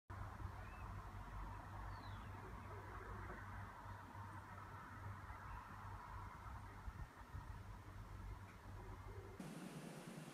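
Faint outdoor garden ambience: a steady low rumble under a soft background hiss, with a couple of brief, distant bird chirps in the first two seconds.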